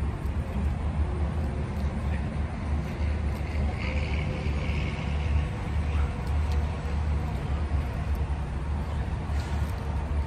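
Steady rumble of highway traffic, with a brief higher hiss about four seconds in.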